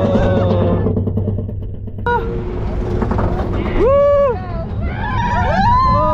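Roller coaster riders screaming and whooping, several voices overlapping over a low rumble of the moving ride, starting about two seconds in after background music with a beat cuts off.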